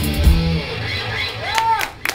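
A live rock band with electric guitar and drums plays the song's final notes, which stop about half a second in and ring away. From about a second in, audience members start to whoop.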